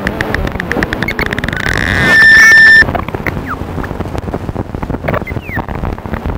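Electronic improvisation on a Ciat-Lonbarde Cocoquantus 2: a rhythmic pulse of clicks speeds up until it fuses into a loud, steady high tone about two seconds in, which cuts off suddenly under a second later. After it come scattered clicks and short falling chirps.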